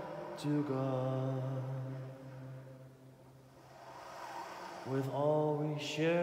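Slow live music from a saxophone and a man's voice: a long held low note that fades almost to nothing about halfway through, then a new note that scoops up into a held tone near the end.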